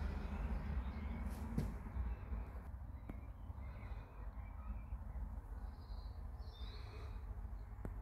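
Quiet outdoor ambience: a steady low rumble on the microphone, with a few short, faint bird calls in the distance and a couple of light clicks.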